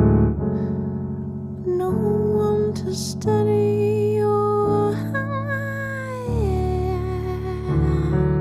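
Slow song in which a bass-heavy piano with hardly any treble plays sustained low chords. A woman's voice sings long held notes over it, entering about two seconds in and sliding down to a lower note near the end.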